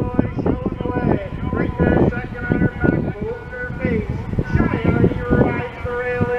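A race announcer calling a harness race through public-address loudspeakers, the voice running on without a break but too indistinct to make out.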